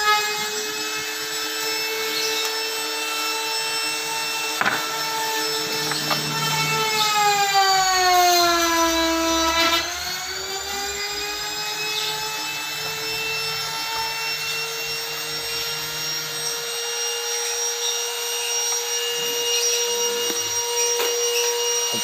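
An electric power tool's motor running steadily with a high whine. Its pitch sags for a few seconds in the middle and then comes back up, as the motor slows and recovers.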